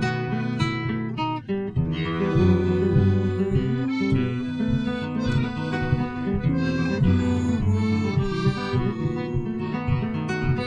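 Piano accordion and acoustic guitar playing together in an instrumental passage of a sea-shanty-style song.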